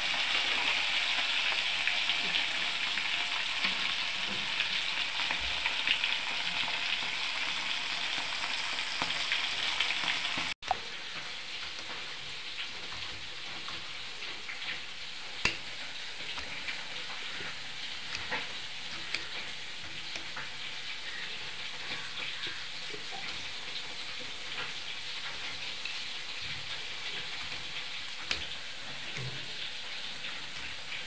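Small fish frying in hot oil in a steel kadai: a steady sizzle that stops abruptly at a cut about a third of the way in. After it, a quieter steady hiss with scattered faint clicks of a knife slicing tomatoes on a hard surface.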